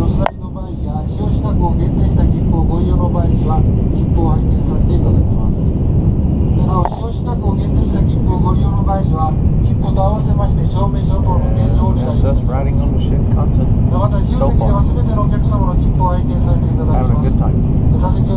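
Cabin noise of a Shinkansen bullet train running at speed: a steady low rumble, with indistinct voices talking throughout. A sharp click just after the start, then the level dips briefly.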